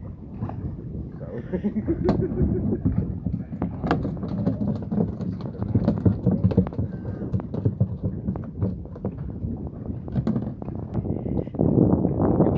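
Indistinct voices over an irregular low rumble with scattered clicks, the kind of wind and handling noise a phone microphone picks up on a small open boat.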